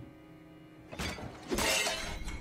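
A quiet, tense music drone broken by a sharp hit about halfway through, then a loud crash of glass shattering.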